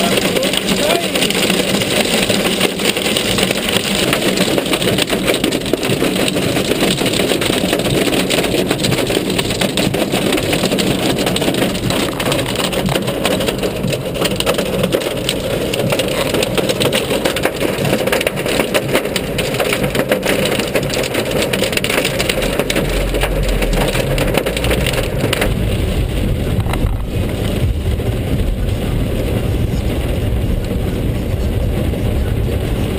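Hail and heavy rain drumming on a car's roof and windscreen, heard from inside the cabin as a loud, dense, continuous patter of small impacts. A low rumble comes in about two-thirds of the way through.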